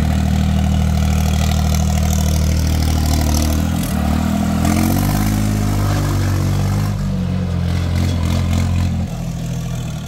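Tractor diesel engine running steadily close by. Its pitch wavers for a few seconds in the middle, and it becomes quieter about nine seconds in.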